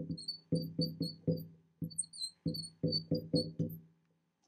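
Marker writing on a glass lightboard: a quick run of short squeaks, one for each pen stroke, coming in small groups with brief gaps and stopping near the end.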